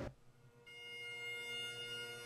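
The music drops out to a moment of near silence, then a soft held note with steady overtones swells in: the opening of a bagpipe drone.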